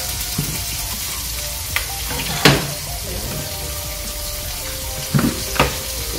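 Pieces of barracuda sizzling steadily as they fry in oil in a pan, with a few sharp clicks of a fork against the pan, the loudest about two and a half seconds in.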